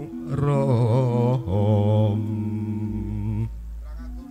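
A low male voice singing long, chant-like held notes with wide vibrato in Javanese campursari style, over steady sustained accompaniment; the voice stops about three and a half seconds in.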